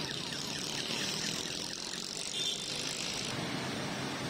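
Steady busy-street ambience, mostly road traffic noise, with a brief high-pitched beep about halfway through.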